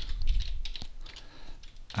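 Typing on a computer keyboard: a quick run of separate keystrokes as a word is typed.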